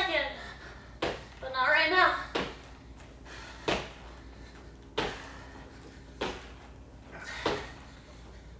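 A woman breathing hard after a cardio plyometric interval, with a sharp exhalation about every second and a quarter and a short voiced sound of effort in the first two seconds.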